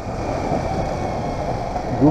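Motorcycle riding along a town street, a steady rush of engine and wind noise with no sudden events.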